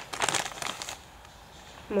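Rustling and crinkling of fibre stuffing being handled and pushed into a small sewn fabric cupcake, for about the first second, then dying away.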